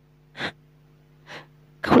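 Two short breath sounds from the storyteller between lines: a quick sharp puff of breath about half a second in, then a softer breath just before he speaks again.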